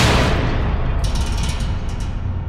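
An edited-in sound effect: a sudden loud boom that hits at once and settles into a heavy, sustained low rumble, with faint crackling about a second in.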